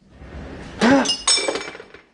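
Glass clinking and ringing about a second in, along with a short rising-and-falling vocal cry.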